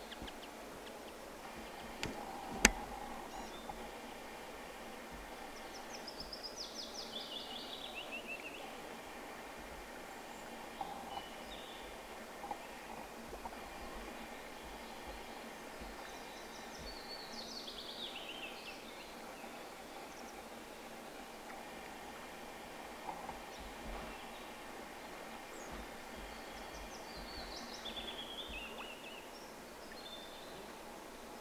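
A songbird singing a short falling trilled phrase three times, about ten seconds apart, over steady outdoor ambience. A single sharp click about two and a half seconds in is the loudest sound.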